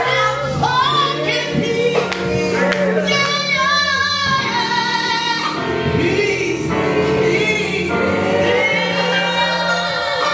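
Live gospel music: a woman soloist sings into a microphone, her held notes wavering with vibrato near the end, over sustained low accompaniment and choir backing.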